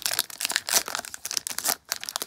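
Foil trading-card pack being torn open and crinkled in the hands: a quick run of crackles and rips with a short pause near the end.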